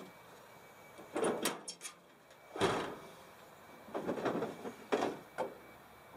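Rear lid of a pickup truck canopy being unlatched, lifted by hand and propped on a stick: a few sharp latch clicks and a series of clunks and rattles, the loudest about two and a half seconds in.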